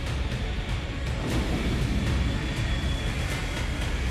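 Background music over a steady low rumble of aircraft engines.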